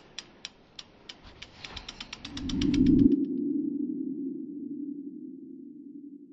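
Logo-animation sound effect: a run of sharp ticks that speed up over about three seconds, over a low swell that peaks as the ticks stop. It ends in a steady low hum that slowly fades.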